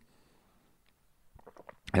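Near silence with faint room tone and a few soft clicks, then a man starts speaking at the very end.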